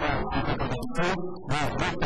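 Voices talking.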